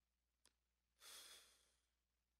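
A person breathing out softly into a close microphone about a second in, a faint sigh-like exhale, after a brief click shortly before it; otherwise near silence.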